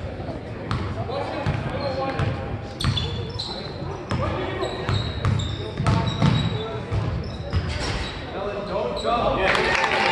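Basketball game on a hardwood gym floor: the ball bouncing as it is dribbled, short sneaker squeaks, and spectators talking. Near the end the crowd noise swells into cheering.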